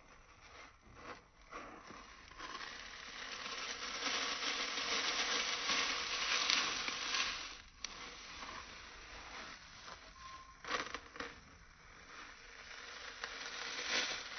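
Wet floral foam being squeezed and crushed by hand in a basin of water: a continuous crushing, squishing noise. It swells about a third of the way in, breaks off for a moment a little past the middle, and builds again near the end.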